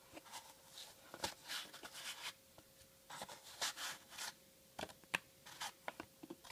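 Faint rubbing and scraping of fingers working at a cardboard trading-card box and the cards packed tightly inside it, with a few light clicks, sharpest about a second in and again near the end.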